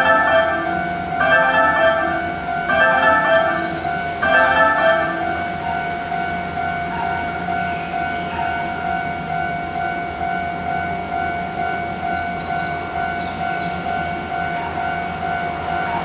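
Station platform warning chime for an approaching train that will not stop: a bell-like phrase repeats about every second and a half, four times, until about five seconds in. A single steady electronic tone then holds for about ten seconds until the train arrives.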